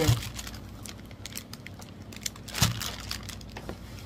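Bubble wrap and plastic packaging crinkling and rustling as wrapped mirror balls are handled and lifted out of a cardboard box, with a sharper crackle about two and a half seconds in.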